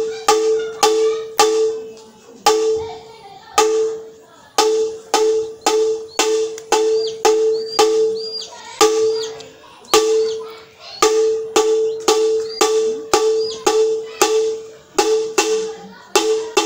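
A metal gong struck rapidly with a stick, mostly two to three strokes a second with a few short breaks, each stroke ringing on at two steady pitches.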